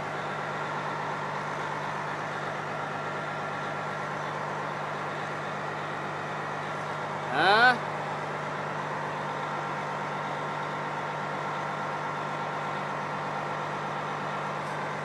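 A steady low mechanical hum made of several even tones. A short rising pitched sound cuts in about seven and a half seconds in.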